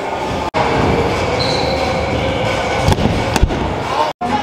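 Stunt scooter wheels rolling on a concrete skatepark floor, a steady rumble that breaks off briefly about half a second in, then two sharp knocks near the end as the scooter and rider hit the ground.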